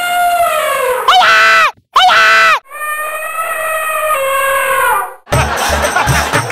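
A high, drawn-out wailing voice in long held cries, each swooping up and then slowly sagging in pitch. About five seconds in, it is cut off by background music with a percussion beat.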